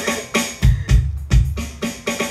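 Drum solo on a drum kit: heavy bass-drum kicks and stick hits in an uneven rhythm, called as an eight-bar drum solo.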